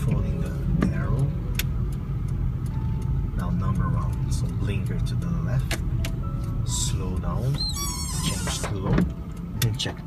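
Steady low engine and road rumble inside a slowly driven car, with a run of light ticks. About eight seconds in comes a short squealing chirp, just after a brief high swish.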